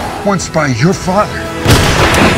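Film trailer soundtrack: a voice speaking a line of dialogue over dramatic music, then a single loud bang near the end.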